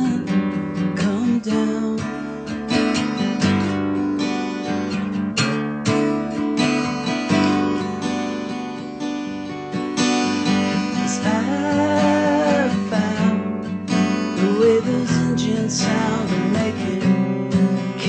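Small-bodied acoustic guitar strummed and picked in a steady rhythm, an instrumental passage between sung lines of the song.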